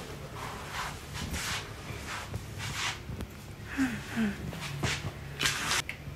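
Soft scuffing steps of slippers on a carpeted floor, a string of short rustling scrapes spaced about half a second to a second apart.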